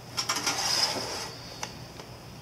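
Cardboard Funko Pop box scraping as it is slid up and out of a snug ammo-box-style case, a rubbing noise lasting about a second, followed by a single click.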